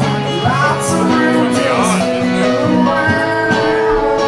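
Acoustic guitar played live in a solo set, with layered notes ringing and held over a low bass note.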